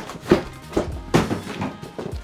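Background music with about four dull knocks from cardboard packaging being pulled apart and a foam gimbal case being handled on a table, the first the sharpest.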